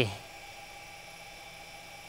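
Steady faint hum and hiss of room tone with a few thin, unchanging tones, after the last word cuts off at the very start.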